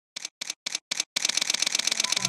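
Camera shutter clicks: four single shots about a quarter second apart, then a rapid burst of continuous shooting.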